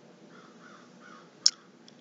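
Quiet room with a faint wavering call in the background, like a distant bird, then a single short sharp click about one and a half seconds in.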